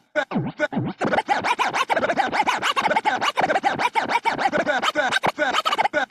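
Vinyl record scratched by hand on a DJ turntable: quick back-and-forth strokes that slide up and down in pitch. They come sparsely at first, then about six a second from about a second in.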